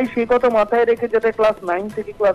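A person's voice speaking rapidly in short syllables.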